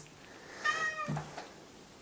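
A house cat meows once, a single call about half a second long, starting a little over half a second in.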